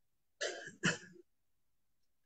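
A person clearing their throat: two short rasping bursts, the first about half a second in and the second just under a second in.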